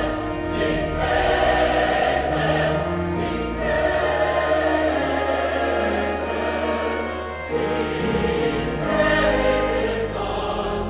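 Mixed choir singing a choral anthem with pipe organ accompaniment, the organ holding steady low notes under the voices.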